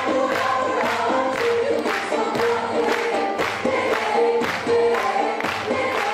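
Mixed choir of men's and women's voices singing a Turkish folk song, with a steady beat of strokes about two a second running under the singing.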